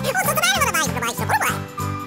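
A cartoon character's high-pitched, wavering vocal noises over children's background music with a steady beat; the vocal sounds stop about one and a half seconds in, leaving the music.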